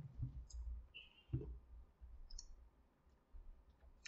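Faint mouth clicks and soft smacks from chewing a chocolate peanut butter cup. They come as scattered short clicks and low thuds, dying away in the second half.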